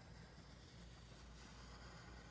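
Near silence: faint scratching of a graphite pencil drawing a line on paper, over low room hum.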